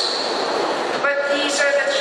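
A woman speaking into a podium microphone. About the first second is a stretch of steady noise with no voice in it, and then her speech resumes.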